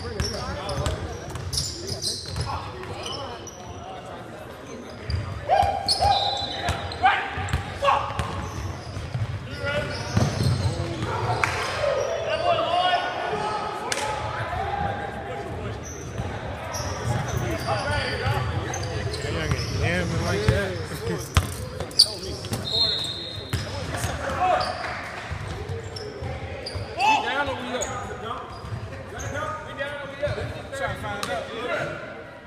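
Basketball bouncing on a hardwood gym floor during play, with scattered sharp impacts and players' voices calling out, all echoing in a large gymnasium.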